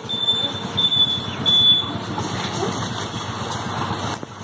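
Electronic beeping from a water ATM's coin and card reader: a high beep about every two-thirds of a second, three times, stopping about two seconds in. A steady low background noise runs under it.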